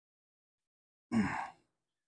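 A man's short sigh of effort about a second in, starting with a low voiced grunt and trailing into a breathy exhale, after a hard push on a soft-plastic hand injector. Before it, silence.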